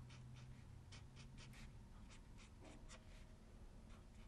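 Faint scratching of an alcohol-ink marker's tip stroking over stamped cardstock, in a series of short strokes that come mostly in the first three seconds.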